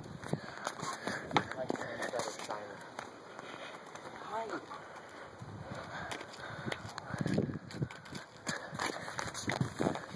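Faint, indistinct voices, with scattered clicks and knocks from footsteps and from handling of a phone microphone.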